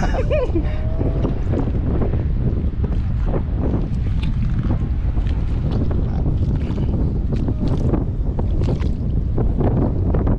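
Wind buffeting the microphone: a steady low rumble, with faint scattered knocks and splashes on top.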